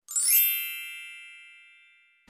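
A bright, bell-like chime sound effect: a quick rising flourish of high tones that peaks about a third of a second in, then rings on as several sustained pitches that fade away over the next second and a half.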